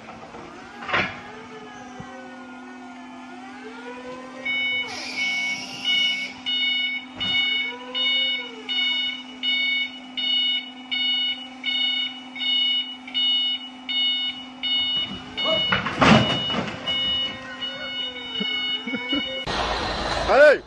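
Forklift reversing alarm beeping steadily, about one and a half beeps a second, over a steady motor hum with some gliding whines. A loud clatter breaks in about four seconds before the beeping stops.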